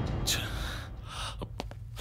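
A man's sharp, audible breath, fading away, followed by a few faint clicks in the second half.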